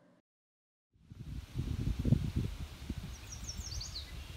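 After about a second of silence, an outdoor low rumble with irregular knocks starts, typical of wind buffeting a phone microphone. Near the end a small bird gives a quick run of short, falling high chirps.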